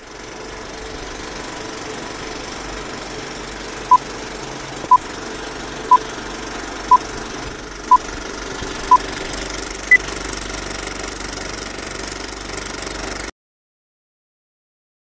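Old film-projector sound effect: a steady whirring rattle with crackle, under a countdown of six short beeps one second apart and then one higher beep. It cuts off abruptly near the end.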